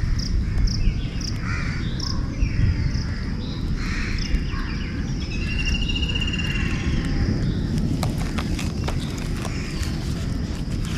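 Birds calling outdoors: short repeated chirps, some harsher calls, and a rapid trill about halfway through, over a steady low rumble. A few light clicks come near the end.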